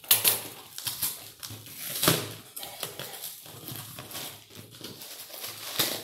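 Brown packing tape being peeled and torn off a cardboard box by hand, in irregular crackling rips with paper rustling between them. The loudest rips come about a quarter second in, about two seconds in and near the end.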